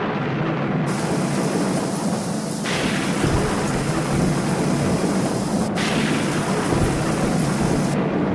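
Recorded rainstorm sound effect: steady heavy rain with rumbling thunder, in a break in the song's music.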